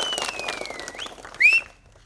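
A person in a crowd whistling: one long whistle falling in pitch, then two short rising whistles, the last one the loudest. It sounds over crowd noise with a few claps, and the sound cuts off shortly before the end.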